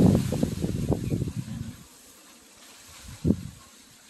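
Wind buffeting the microphone in a low, uneven rumble that dies away about two seconds in, followed by one short low bump a little after three seconds.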